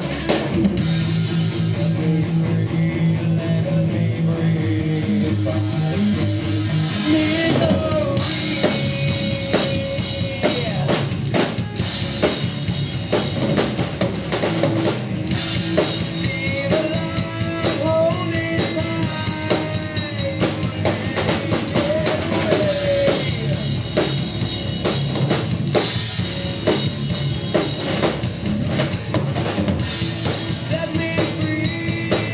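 A live rock band playing: electric guitar, bass guitar and drum kit together. The sound grows fuller and brighter about eight seconds in.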